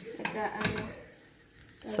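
Egg and bread frying quietly in a non-stick pan, with a short voice sound in the first second and light clicks of a spatula against the pan.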